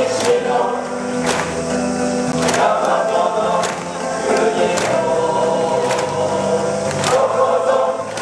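A school song sung by a choir with accompaniment, played over stadium loudspeakers, with a sharp beat about every second and a quarter.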